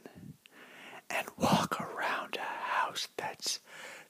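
A man whispering close to the microphone, with a short pause near the start.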